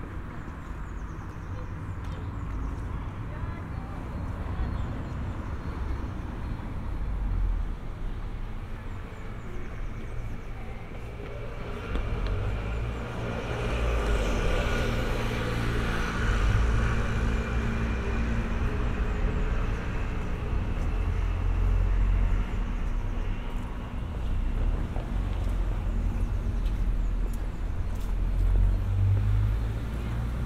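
Village street ambience: a car drives past, swelling and then fading about halfway through, over a steady low rumble.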